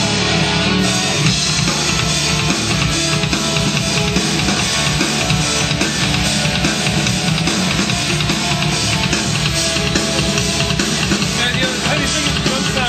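Loud rock music with guitar and drum kit playing a steady beat.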